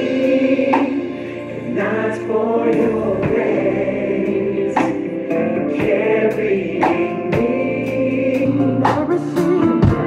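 Gospel choir singing sustained chords over a live band recording, with a drum kit played along. Snare and cymbal crashes come about once a second.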